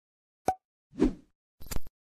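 Three short sound effects, about half a second apart, in otherwise dead silence. The last one is the loudest and reaches highest.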